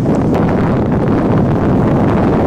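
Wind buffeting the microphone: a loud, steady low noise with no distinct events.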